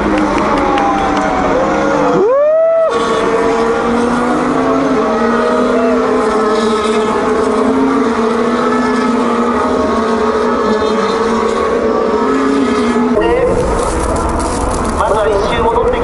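Formula 1 cars' turbocharged V6 engines running past on a wet track, their notes held for several seconds as cars stream by. One note sweeps sharply upward about two seconds in as a car accelerates.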